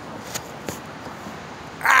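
A man's loud, strained "ah" of exertion as he pulls himself up on a pull-up bar, starting near the end. Before it there is only faint background with a couple of light clicks.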